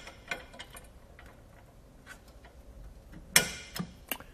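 Small metal clicks and taps as the tilt pin is pushed back into a hitch bike rack's mast, several quick ones in the first second, then one sharp, louder click about three seconds in as the pin is set back in place.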